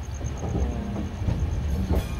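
LHB passenger coach wheels rolling over the track at low speed: a steady low rumble with a few wheel knocks over rail joints.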